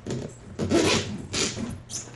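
A cardboard shipping box being cut open, with about four short rasping strokes of a cutting tool through packing tape and cardboard. The loudest stroke comes about a second in.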